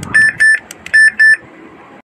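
Built-in speaker of a J&F WS858 Bluetooth karaoke microphone giving four short, loud, high electronic beeps in two quick pairs, with a few faint clicks in between.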